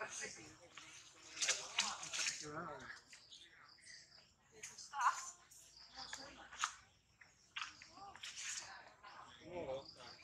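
Young long-tailed macaques squealing in short, sharp, high-pitched cries during a scuffle. The cries come again and again, the loudest about five seconds in.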